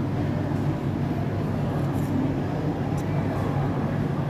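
Food court background noise: a steady low hum with a faint murmur of surroundings and a couple of light clicks about two and three seconds in.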